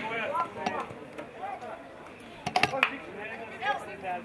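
Players shouting calls to each other across an open football pitch, with a quick cluster of sharp knocks about two and a half seconds in.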